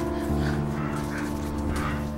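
Soft sustained music chords under a woman's rhythmic breathy panting, about three breaths a second.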